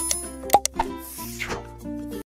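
Background music with sound effects from a subscribe-button animation: a sharp pop about half a second in, then a hissing swoosh around one second in.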